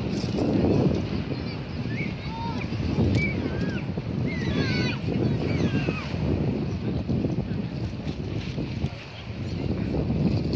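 Wind buffeting the microphone with an irregular rumble, and short chirping bird calls over it during the first half.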